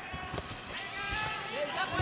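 Kickboxing arena crowd, with one voice from the crowd calling out in a long drawn-out shout and a couple of dull thuds of blows landing in the ring.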